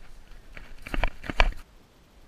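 Footsteps of someone running through dry grass, with heavy thumps jostling a body-worn camera; the loudest thump comes about one and a half seconds in, then the sound stops suddenly.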